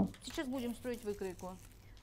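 Quiet speech only: a woman talking softly in short phrases, much lower than her normal narration.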